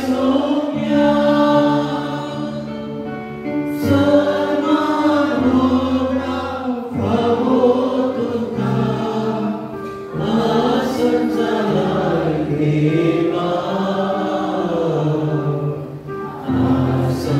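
Choir singing a slow Taizé chant, several voices in harmony over sustained low notes, the phrases breaking every few seconds.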